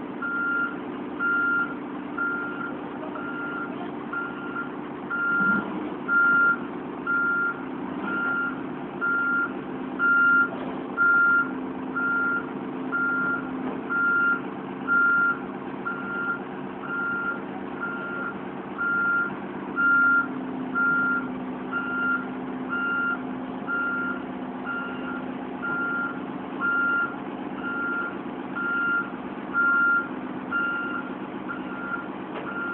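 Heavy-equipment backup alarm beeping about once a second, a single high tone, over a diesel engine running steadily.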